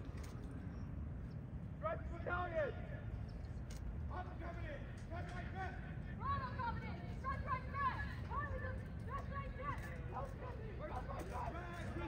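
Distant shouted drill commands, several voices calling out in turn across an open field, over steady low background noise. These are the platoon commanders' commands to align their ranks (dress right, dress).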